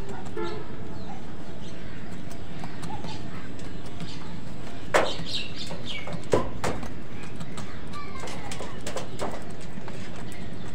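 House crows calling now and then with harsh caws over a steady background noise. The two loudest caws come about halfway through, with fainter high chirps from smaller birds around them.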